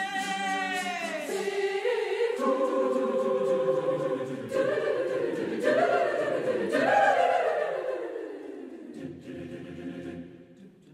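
Mixed choir singing a cappella: sustained chords with voices sliding in pitch, swelling to its loudest about seven seconds in and then fading away.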